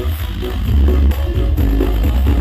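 Music played loud through a truck-mounted horeg sound system (a tall stack of loudspeakers), dominated by heavy, booming deep bass with a steady beat.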